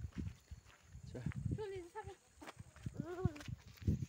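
Footsteps on a dirt road, with a few short high-pitched calls about one and a half and three seconds in.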